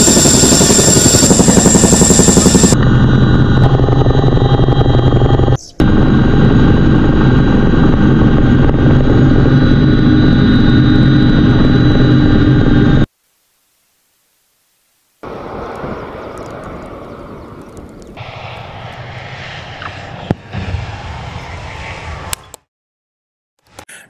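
Chinook tandem-rotor helicopter running loud, a steady turbine drone over a fast rotor beat, broken by two brief cuts. It drops out for about two seconds, then a much quieter rushing noise follows, with a couple of short knocks near the end.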